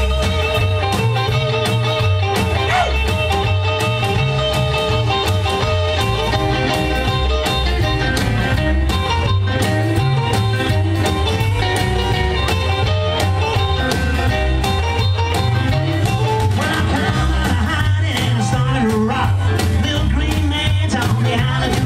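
Live rock and roll band playing an instrumental break with no singing: upright double bass and drums driving a steady beat under electric guitar, saxophone and keyboard.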